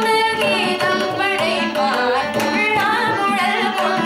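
Carnatic vocal performance: a young woman singing with gliding, ornamented notes, accompanied by violin and mridangam strokes over a steady drone.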